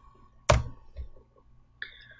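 A single sharp click about half a second in, from the mouse or slide clicker advancing the presentation. It is followed by a softer low knock, and near the end a brief faint tone.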